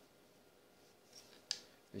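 Mostly near silence with faint rustling of nylon paracord being worked by hand, and a short click about a second and a half in.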